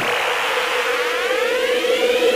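Electronic dance-music build-up: a siren-like synth riser climbing steadily in pitch over a held steady tone, leading into a dubstep track.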